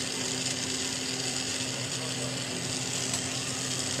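Bench-mounted glassworking torch flame hissing steadily, with a low steady hum underneath.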